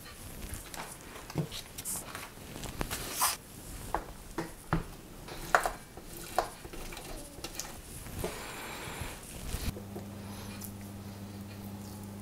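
Scattered light clicks and taps of kitchen handling as a block of vegan cheese is grated on a metal box grater over a plate and crumbled by hand. A steady low hum comes in near the end.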